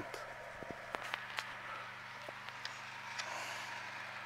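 Quiet outdoor background: a faint steady low hum with a few light scattered clicks and ticks.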